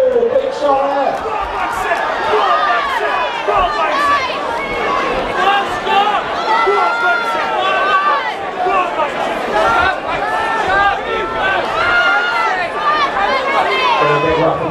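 Crowd of spectrators talking and calling out at once, many overlapping voices with no single voice standing out.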